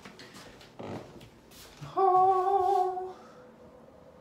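A person's voice humming one steady, held note for about a second, a little after the middle.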